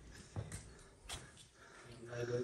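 Near silence with a few faint, short knocks, a couple about a third of a second in and one about a second in: footsteps on the rock floor of a cave.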